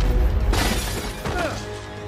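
Movie fight-scene soundtrack: music under a burst of shattering glass and debris about half a second in, with short gliding ringing sounds after it.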